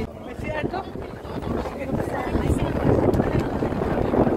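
Wind buffeting the microphone on the open deck of a moving lake passenger boat, over the boat's steady running noise, growing louder about two seconds in.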